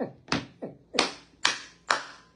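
A man clapping his hands slowly and evenly, about two claps a second, in mock applause.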